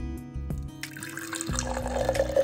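Juice pouring from a jug into a glass, starting about a second in and getting louder toward the end, over background music with a steady beat.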